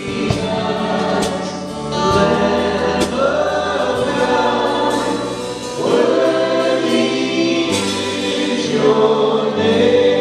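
A live worship band playing a gospel song while several voices sing in long, held phrases, new lines starting about two, six and nine seconds in.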